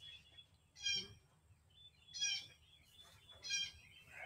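A bird calling outdoors: three short, similar notes about a second and a half apart.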